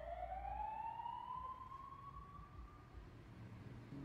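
Faint siren sound in the tail of a hip-hop track: one tone rises slowly in pitch over about three seconds and fades away.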